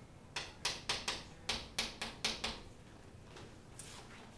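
Chalk writing on a chalkboard: a quick run of about eight short taps and scrapes in the first two and a half seconds, then quiet room tone.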